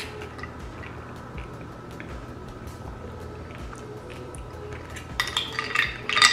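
A plastic spoon clinking and scraping in a glass dish of fruit, ice and coconut water. There are faint scattered ticks, then a quick run of bright clinks near the end as the spoon digs in among the ice.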